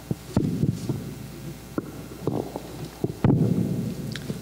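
Several irregular low thumps and knocks picked up by a table microphone, the loudest one near the end.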